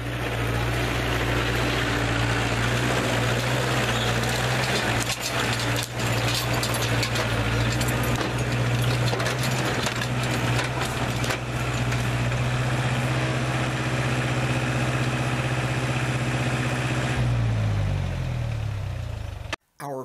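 Tractor engine running steadily while towing a trailer over rough ground, with a few short knocks and rattles. Near the end the engine note steps down as it slows, then the sound cuts off.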